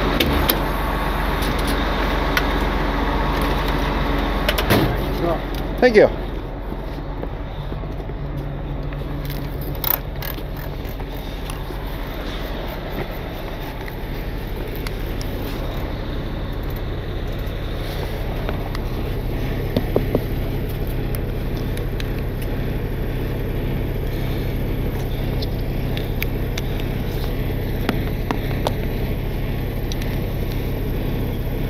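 Heavy diesel truck engine idling steadily. A short squeal about six seconds in and a sharp click near ten seconds stand out over it.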